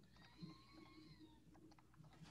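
Near silence: room tone, with one faint thin pitched sound about a second long that drifts slightly down in pitch at its end.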